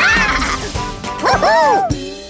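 Cartoon sound track: background music under high-pitched wordless yelps from cartoon characters. Two or three cries that rise and fall in pitch come close together in the last half second.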